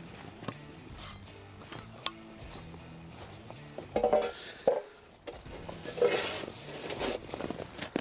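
Soft background music with steady held notes, over the clinks and knocks of metal shoring raker rails and fittings being handled on a tarp. There is one sharp clink about two seconds in and a few louder knocks from about four seconds on.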